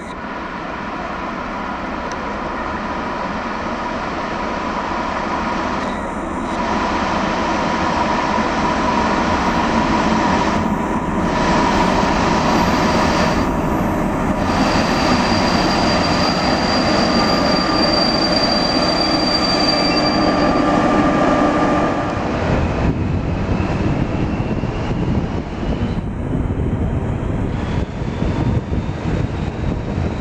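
A ČSD class 754 'brejlovec' diesel locomotive hauling a passenger train draws into the station, growing louder as it approaches, with a high steady wheel squeal for several seconds in the middle. Around two-thirds of the way through the sound shifts to the low rumble of the train running, with a slowly rising tone.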